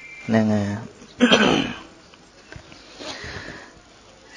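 A man's voice preaching in short bursts with pauses: a brief held syllable, then a sharp breathy sound just after a second in, and a faint breath near three seconds.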